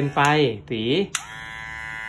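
Barber Brain Black Beast 2 cordless hair clipper switched on with a click about a second in, then its motor running with a steady buzz.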